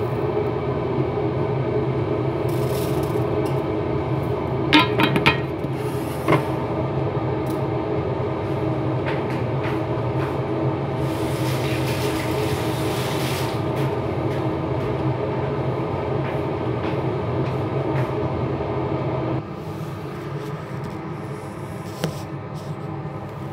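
A steady droning hum with several fixed tones, with a few sharp clicks about five and six seconds in and a hiss around twelve seconds in; the hum drops in level a few seconds before the end.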